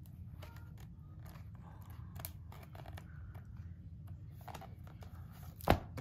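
Pages of a picture book being turned and handled: soft, scattered paper rustles and light ticks. A sharp knock comes near the end as the book is closed and laid down.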